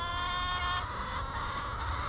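A chicken's single drawn-out call, a steady pitched note lasting a little under a second.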